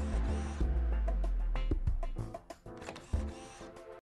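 Television programme theme music over the closing graphics: a deep held bass note for about the first two seconds under layered tones, with sharp clicks scattered through.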